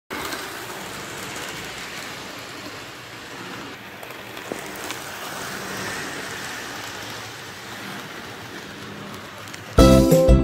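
Large-scale model train rolling past close by on its track, a steady rushing noise. Just before the end, much louder strummed guitar music starts abruptly.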